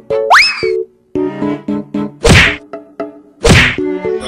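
Comedy sound effects over a light background tune: a quick rising whistle near the start, then two loud whack hits about a second apart.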